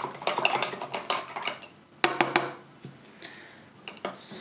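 Paintbrushes rattling and clinking against a brush-rinsing jar: a run of quick clicks in the first second and a half, and another short clatter about two seconds in.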